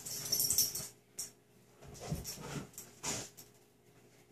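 A pet dog in the background making short noises in a few separate bursts.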